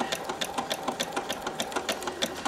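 Husqvarna Viking electric sewing machine running a decorative embroidery-type stitch: a quick, even ticking of the needle, about ten stitches a second, over the steady whir of its motor.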